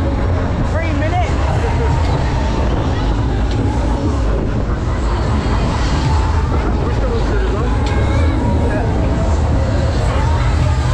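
Superbowl fairground ride in motion, heard from one of its cars: a loud, steady low rumble from the ride, with riders' voices shouting over it.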